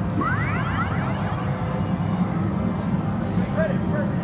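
Arcade ambience: a steady low hum of game machines. About a quarter second in comes a quick run of rising electronic chirps from an arcade machine's sound effect, lasting about a second.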